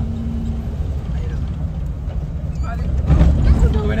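Car cabin noise while driving: a steady low rumble of engine and road, swelling louder about three seconds in.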